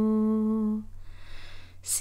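A woman singing a Tamil lullaby holds one long steady note that stops a little under a second in. Then comes about a second of soft breathing before she starts the next line.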